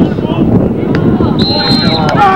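Wind rumbling on the microphone under people's voices calling out, and a short, steady high-pitched tone near the end.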